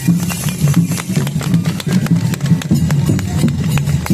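Traditional enburi festival music played live in the street: drums and a dense low accompaniment, with many sharp clicks through it.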